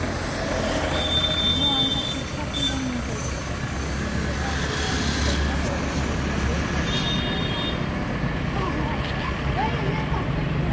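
A vehicle's engine running steadily with a low hum, against a busy background of voices and a few short high-pitched tones that come and go.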